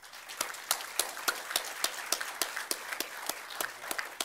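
Audience applauding: a dense, irregular patter of many hands clapping that starts right away and thins slightly near the end.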